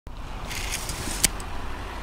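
Pickup truck running at low speed, a steady low hum with faint hiss, and one sharp click a little past halfway.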